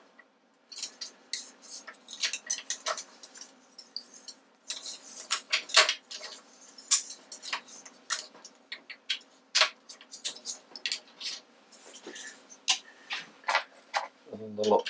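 Irregular light metallic clicks and taps as a spanner and small metal parts are handled while the nut on a drill press's quill return-spring housing is fitted, over a faint steady hum.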